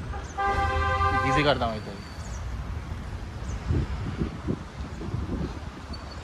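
A single horn toot, held steady on one note for about a second and falling in pitch as it dies away.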